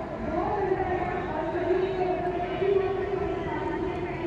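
Indistinct background voices from players or spectators at a cricket ground, murmuring steadily with no clear words.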